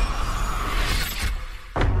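Trailer sound effects over music: a loud, noisy crash-like wash that fades out about a second and a half in, then a sudden deep boom just before the end.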